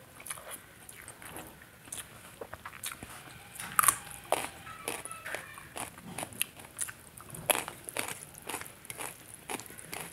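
Close-miked chewing of rice and ridge gourd curry: a steady run of short, wet clicks and smacks from the mouth, with a louder one about four seconds in.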